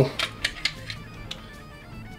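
A few light plastic clicks as the water-squirt cartridge is pulled out of a 1996 Beast Wars Megatron action figure's neck, over quiet background music.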